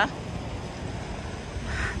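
Steady low outdoor background rumble of wind and road traffic.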